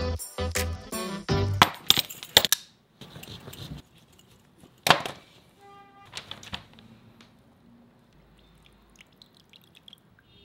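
A short jingly music cue for the first two and a half seconds. Then a knife cuts through a lemon on a paper-covered table, with a single sharp knock near the middle and a brief ringing clink just after. After that there are only faint small handling sounds.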